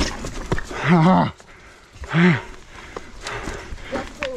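Two short wordless voiced sounds, about a second and two seconds in, like a rider's grunts of effort. Under them runs the scattered clicking and rattling of a mountain bike rolling over a rocky trail.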